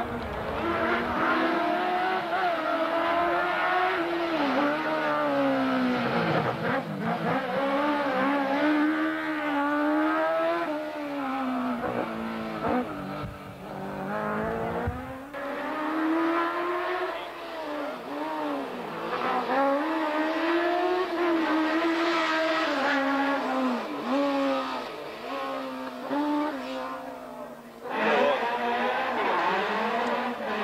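Racing car engines driven hard, the pitch climbing and dropping again and again as the cars accelerate, shift gears and brake through the course.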